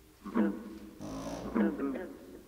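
Yelping animal calls played as recorded wildlife sounds: one short yelp about a quarter of a second in, then a quick run of yelps from about a second in, each falling in pitch.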